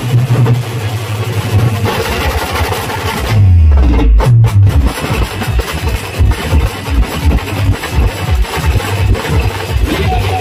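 Adivasi timli band music: drums keep up a steady, driving beat over heavy bass. About three and a half seconds in, the upper sounds briefly drop away under a deep falling bass sweep, and then the drum beat picks up again.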